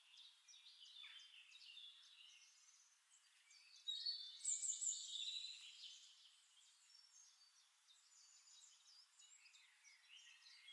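Faint birds chirping and twittering, with a short burst of chirps about four seconds in lasting about two seconds; otherwise near silence.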